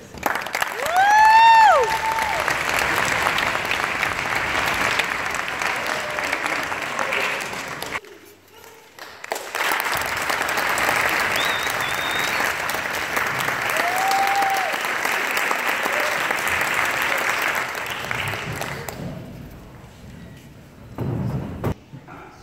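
Audience applauding, with a loud whistle that rises and falls about a second in and a shorter whistle later. The clapping drops away for a moment about eight seconds in, picks up again, and dies away toward the end.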